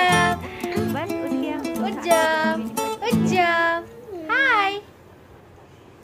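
Background music that stops about halfway, with four short high-pitched squealing calls that rise and fall in pitch, from a toddler's voice.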